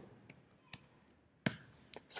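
A few keystrokes on a computer keyboard: faint taps, then one louder key click about a second and a half in.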